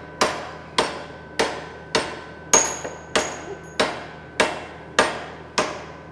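A big hammer striking a high-carbon steel file welded to mild steel and held in a steel vise: about ten steady blows, a little under two a second, each with a brief metallic ring. It is a hammer test of the weld, which bends over without cracking while the file itself is torn up.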